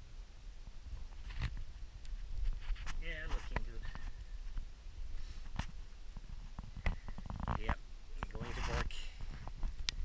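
A low rumble with scattered sharp clicks and knocks, and a voice sounding briefly twice: about three seconds in and again near the end.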